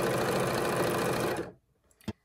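Sewing machine running steadily, stitching a seam through layered cotton fabric; it stops suddenly about one and a half seconds in.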